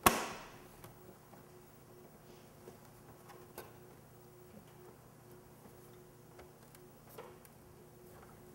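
A single sharp knock with a short ringing tail right at the start, then a few faint clicks and taps as a plastic fairing panel is handled and fitted against a motorcycle's frame.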